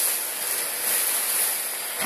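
Thin milk-crepe batter sizzling in a hot frying pan as the pan is tilted and swirled to spread it thin: a steady hiss.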